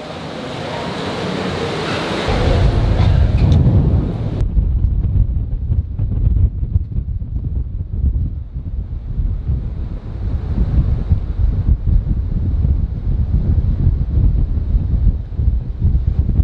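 Wind buffeting the microphone: a loud, gusting low rumble that sets in about two seconds in, after a brief steady hiss.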